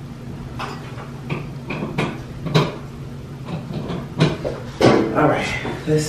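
Heat gun running steadily over freshly poured epoxy resin to draw out bubbles, with several sharp knocks along the way.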